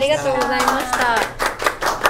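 Three people clapping their hands in quick, steady claps, the claps growing denser after the first second.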